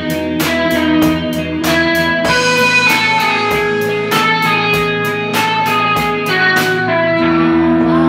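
Live rock band playing an instrumental passage: several electric guitars ringing out held notes over drums and cymbals. The cymbal hits stop about seven seconds in, leaving the guitars ringing on their own.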